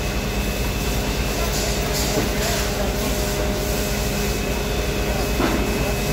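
Steady mechanical drone with a low rumble and a thin held whine, unchanging throughout, with faint voices now and then.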